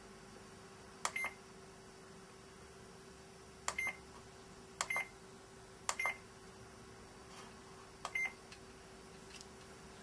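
Push buttons on a Datax3 mobile data terminal pressed five times at uneven intervals. Each press gives a click followed by a short, high beep.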